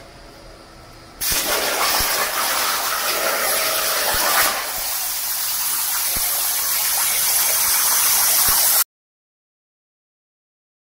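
Hypertherm Powermax 85 plasma torch on a CNC table cutting steel: a softer hiss, then about a second in a much louder steady hiss as the arc runs through the plate. It cuts off suddenly near the end.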